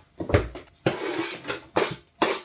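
Kitchen tidying noises: a thump about a third of a second in, then several short clattering, rustling knocks as things are handled at the counter.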